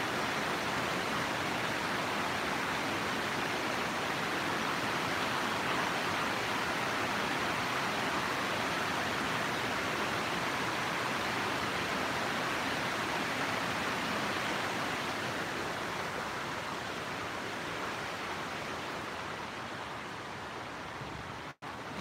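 Fast-flowing mountain river rushing over rocks in a stone channel: a steady white-water noise that eases slightly near the end, with a brief dropout just before it stops.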